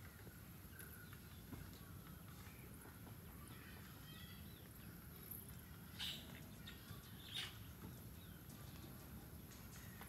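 Quiet outdoor background with faint bird chirps, and two light knocks about six seconds in and again a second and a half later, from feet or hands on the rungs of a bamboo ladder being climbed down.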